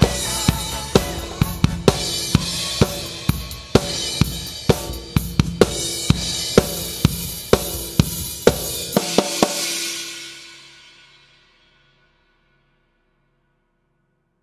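Acoustic drum kit played along to a funk-disco backing track, with snare and bass drum hits about twice a second under hi-hat and cymbals. The music fades out about ten seconds in and ends in silence.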